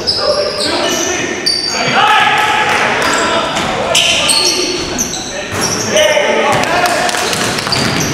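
Basketball game sounds in a gymnasium: sneakers squeaking on the hardwood court in many short high chirps, the ball bouncing, and players calling out.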